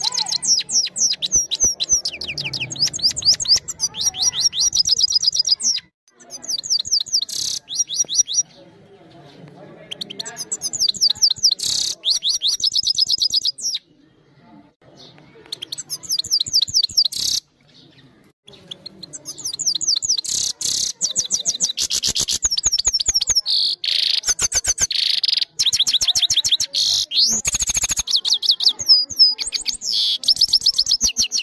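Caged European goldfinch singing close to the microphone. It gives loud bouts of rapid trills made of fast sweeping high notes, several seconds at a time, broken by short pauses.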